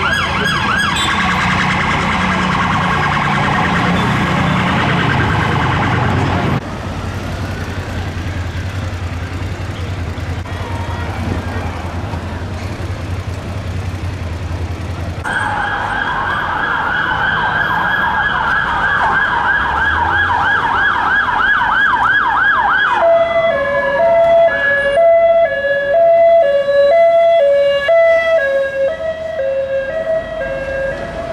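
Emergency vehicle sirens in traffic: a fast yelp that stops abruptly about six seconds in, a low engine rumble beneath, then a second fast yelp that winds down, giving way to a two-tone hi-lo siren near the end.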